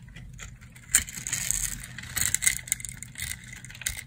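A knife cutting through a dry bar of soap that has been scored into a grid, breaking off small cubes with a crisp crunching and crackling. A sharp snap comes about a second in, then a run of crunching with several louder clicks.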